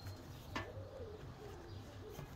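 A dove cooing in low, wavering notes, with one sharp click about half a second in from the watch case being handled on the metal table.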